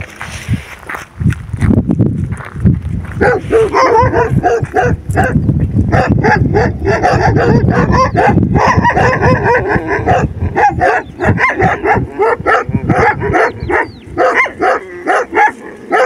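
A pack of dogs barking over and over, several voices overlapping, in a standoff between street dogs and a guardian dog escorting his female. Wind rumbles on the microphone at the start, and the barking sets in about three seconds in.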